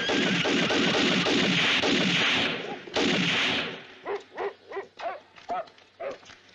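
Rapid, sustained gunfire from a film shootout, a dense volley for about two and a half seconds and one more short burst about three seconds in. In the last two seconds it gives way to a string of short pitched cries.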